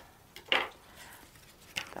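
Thin clear plastic clamshell pack being handled and opened, crackling and clicking, with one sharp crackle about half a second in and a couple of smaller clicks near the end.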